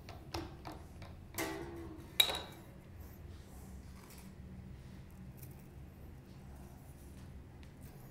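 Guitar string being wound onto a Fender vintage-style slotted tuning post: a few light clicks, then two short metallic pings about a second and 2 s in, the second with a brief ring. After that only a low steady hum.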